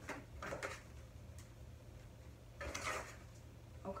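Paper and a book being handled out of a cardboard subscription box: a few light taps early on and a brief rustle of paper about three seconds in.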